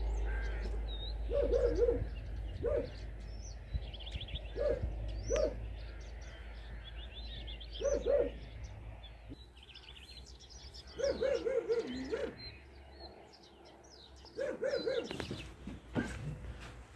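Crows cawing repeatedly in short runs of two to four calls, with small birds chirping higher up. A low rumble runs under the first half.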